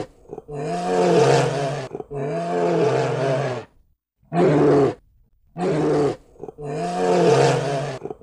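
Bear roaring, a series of five deep, pitched roars with short pauses between them; the first, second and last are longer, the two in the middle shorter.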